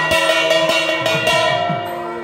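Live procession music: steady held wind tones over drum strokes that dip in pitch, with bells ringing through it.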